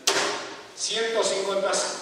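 A single sharp knock right at the start, then a man's voice talking.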